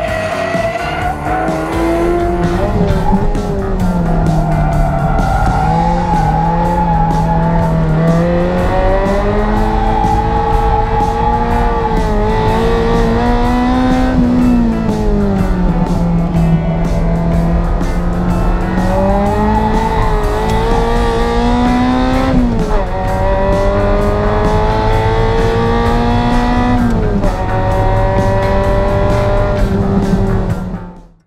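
Ferrari 348's V8 engine running hard on track, its pitch climbing through each gear and dropping sharply at the upshifts, falling away more gently when the driver lifts for corners.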